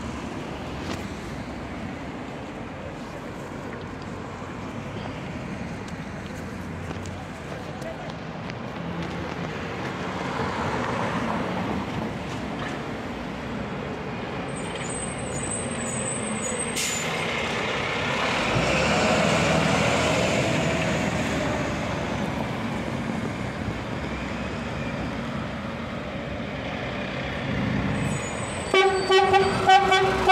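Fire engines' diesel engines running as the trucks drive slowly up, growing louder as they near, then several short, sharp blasts of a fire engine's horn near the end.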